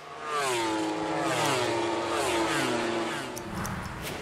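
Racing motorcycle engine, loud, its pitch falling in a series of about four sweeps.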